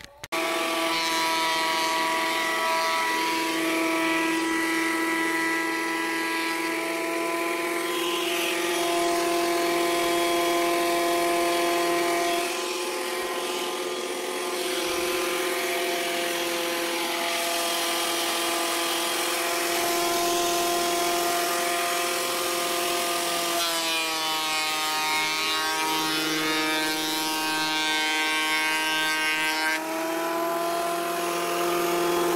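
Craftsman benchtop thickness planer running with a steady whine while it planes a reclaimed shiplap board. Its pitch dips a little about three-quarters of the way through.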